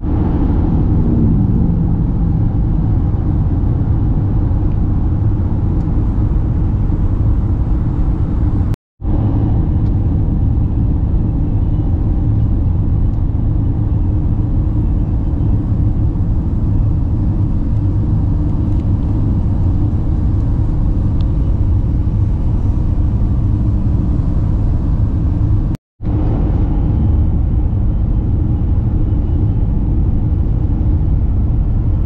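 Steady low road and engine rumble heard from inside a Renault Captur's cabin while cruising at highway speed. The sound drops out completely for a split second twice, about nine and twenty-six seconds in.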